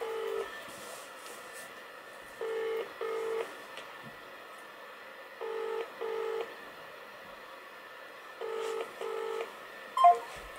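British double-ring ringback tone from a mobile phone on speakerphone: a pair of short low tones every three seconds, an outgoing call ringing and not being answered.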